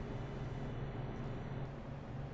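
Room tone: a steady low hum under a faint even hiss, with no distinct event.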